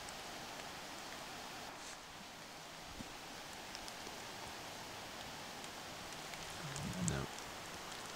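Steady, even hiss of outdoor woodland ambience on the field microphone, with a faint tap about three seconds in and a brief voice near seven seconds.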